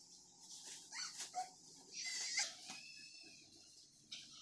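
Faint rustling as a drawstring bag is handled and a punching bag pulled out of it, with two short, high-pitched whines about one second and two seconds in.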